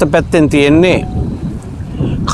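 A man's voice speaking for about the first second, then low wind noise rumbling on the microphone in the pause.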